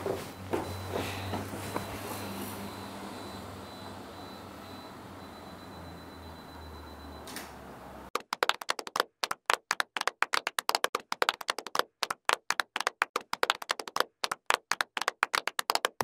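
Faint room noise with a thin steady high tone and a single sharp click about seven seconds in. Then a rapid run of sharp clicks, separated by dead silence, fills the second half.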